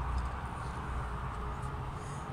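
Steady low background hum between spoken remarks, with no clear event standing out.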